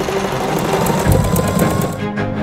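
Industrial sole-stitching machine running, stitching the outsole of a leather boot in rapid, even strokes.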